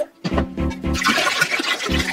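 Liquid clear glaze swirling and pouring out of a swirlware vase into a plastic tub, starting about a third of a second in, with background guitar music.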